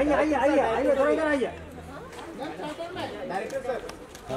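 Several voices talking and calling out over one another, louder in the first second and a half, then quieter.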